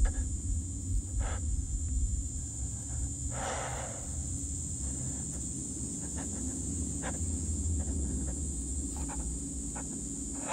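Tense film soundtrack: a steady, deep low rumble with a few soft clicks and a short rustling hiss about three and a half seconds in.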